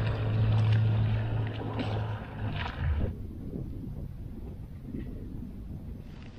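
Small wooden fishing boat's motor running with a steady low hum as the boat moves across the water, with wind and water noise; the sound cuts off abruptly about three seconds in, leaving only quieter background noise.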